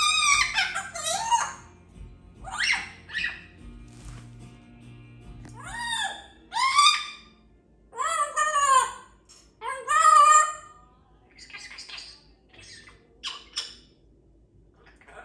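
African grey parrot giving a run of loud whistled calls, each arching up and down in pitch, with short gaps between them and fainter calls near the end.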